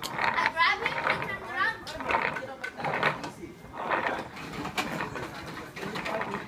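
Children talking and calling out as they play, the voices fairly quiet and somewhat distant, with no clear words.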